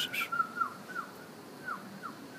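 Hill myna whistling: a thin, steady whistled note that breaks into several short falling whistles.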